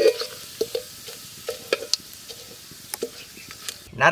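Whole spices (fennel seeds, star anise, bay leaf and cinnamon) sizzling in hot oil in an aluminium pot, with irregular sharp crackles and pops from the seeds. This is the tempering stage, with the oil hot enough to make the spices spit.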